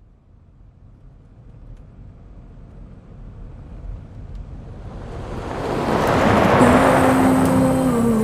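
A swell of noise that rises steadily from near silence to full loudness over about six seconds, like a long whoosh, leading into a music track whose held notes come in near the end.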